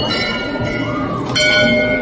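Temple bell ringing: struck at the start and again about one and a half seconds in, each strike leaving a long ringing tone at several pitches.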